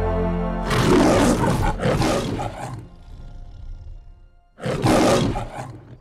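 The lion roar of the Metro-Goldwyn-Mayer logo: a loud roar in two surges about a second in, then a second roar near the end that cuts off suddenly. A held brass chord fades out just before the first roar.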